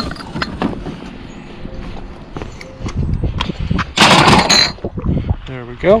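Hands rummaging through a plastic curbside recycling bin of plastic bottles and containers: light rustling and clatter, with one loud clattering burst about four seconds in.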